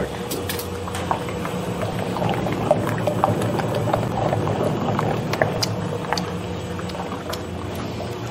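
Emery Thompson 12-quart batch freezer running steadily as it churns a batch of ice cream mix, a constant machine hum with a few small clicks and knocks over it.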